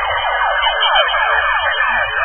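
Electronic dance music from a live DJ set: a rapid run of short, rising, siren-like synth sweeps repeating several times a second over a bass line.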